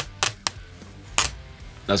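Clear protective plastic film being peeled off the face of a Mission Engineering SP1 expression pedal, giving a few sharp crackles and clicks as it comes away.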